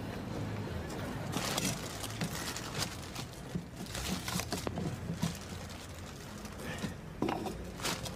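A cloth rubbed over the inside of a small car, giving irregular scrubbing and squeaking sounds with small knocks, starting about a second in, over a low steady background hum.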